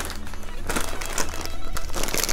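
Plastic snack bag of cheese puffs crinkling as it is picked up and handled, a run of quick irregular crackles.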